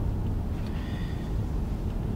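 Steady low road and engine noise inside the cabin of a moving Infiniti Q50.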